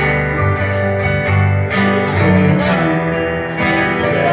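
Live band playing a song: strummed acoustic guitar over an electric bass line and keyboard.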